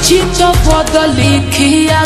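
Bhojpuri song, slowed down with heavy added reverb: a pitched melody over a sustained bass line with some drum strokes.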